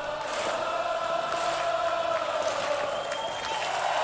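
Live rock band and orchestra holding a long sustained chord, with the crowd cheering over it; the sound is thin, with little bass.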